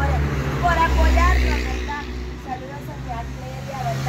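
Talking voices over a low, steady engine rumble.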